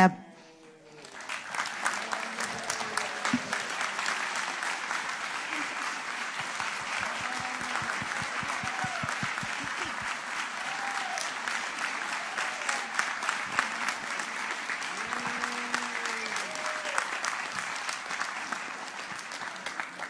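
Audience applauding, the clapping building up about a second and a half in and running on steadily, with a few voices heard among it.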